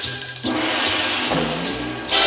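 Swing-band accompaniment in a short instrumental gap between vocal lines, with a fast, even rattle up high over low bass notes and a note that dips and rises again near the end.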